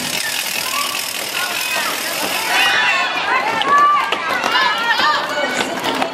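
Several voices shouting and calling over one another, with an even high hiss under them for the first two and a half seconds.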